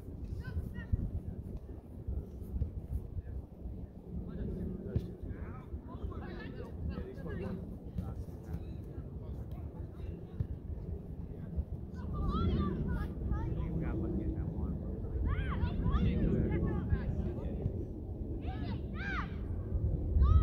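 Scattered shouts from players and people around an outdoor soccer field, with a few louder, high-pitched calls in the second half, over a steady low rumble of wind on the microphone.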